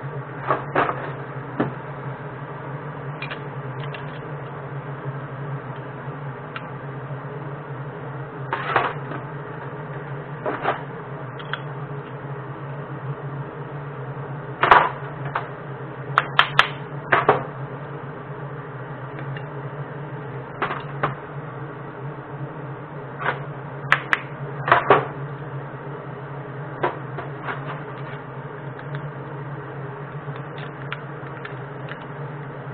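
Scattered sharp clicks and clanks of metal casting molds and tools being handled on a workbench, in small clusters, over a steady low hum.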